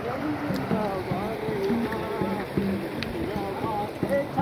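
Indistinct chatter of several men talking at once in the background, over a steady rushing hiss.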